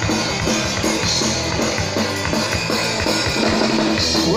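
Rock band playing live through a stage PA: drum kit, guitar and bass in a steady, loud instrumental stretch with regular drum hits and no singing.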